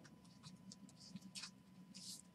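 Faint scuffs and light ticks of a thick trading card being handled between the fingers, several short ones, the strongest about one and a half seconds in, over a faint steady hum.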